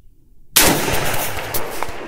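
A single shot from a PSA PSAK-47 AK-pattern rifle in 7.62×39, about half a second in, followed by a long echoing tail.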